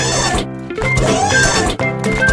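Background music with a steady beat and a melody.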